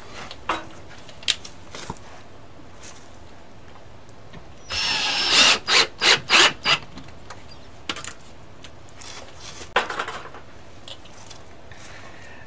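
Cordless drill driving a screw into a wooden window sill: a run of about two seconds, then a few short bursts as the trigger is pulsed to seat the screw. A few light knocks come before and after.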